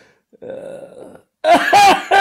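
A short, rough throaty vocal sound from a man, followed about a second and a half in by loud, repeated bursts of laughter.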